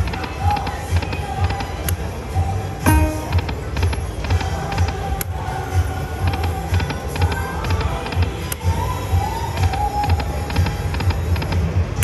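Dragon Link 'Happy & Prosperous' slot machine playing its electronic music and reel-spin sounds through repeated spins, with a sharp click-like sound every few seconds.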